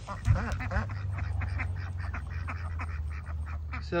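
Ducks quacking and chattering in a rapid run of short calls, with a thump about a third of a second in.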